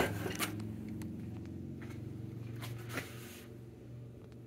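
A steady low hum, with faint rubbing and a few soft clicks scattered through it.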